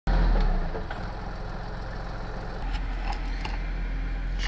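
A steady low rumble like an idling engine, with a few faint clicks.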